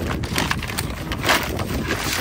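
Rustling and crackling of shopping items and their packaging being handled, with a slightly louder rustle a little past the middle.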